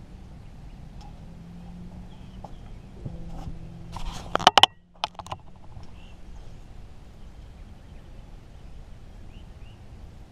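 Rod and reel being handled at a boat's rod holders, making a cluster of sharp knocks and clatter between about three and five seconds in, the loudest near the middle, with one more click just after. A steady low hum runs underneath.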